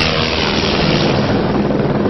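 Helicopter engine and rotor noise, loud and steady.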